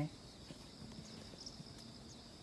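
Faint, steady, high-pitched chirring of insects such as crickets, with a few soft scattered clicks.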